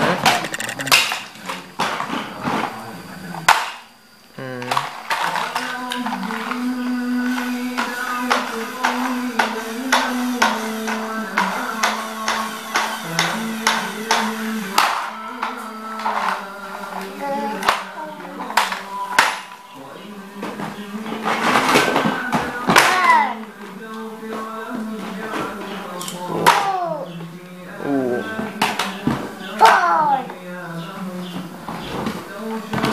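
Plastic toys clattering and knocking as they are pulled from a box and handled, over a simple electronic tune of held, stepping notes. A child's voice gives a few short rising-and-falling sounds near the end.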